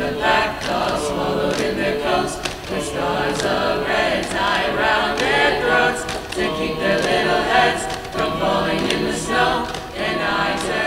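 A mixed-voice high-school choir singing through face masks, many voices together in continuous harmony.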